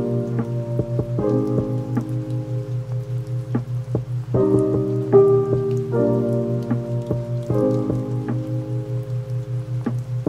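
Background music of held chords that change every second or two over a low pulsing tone, mixed with the sound of steady rain with scattered drops.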